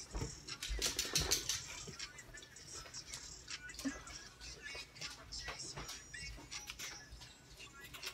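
Faint, tinny music leaking from earbuds worn in the ears, with scattered small clicks.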